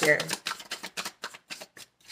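A tarot deck being shuffled in the hands: a quick run of short card snaps, several a second, thinning out toward the end.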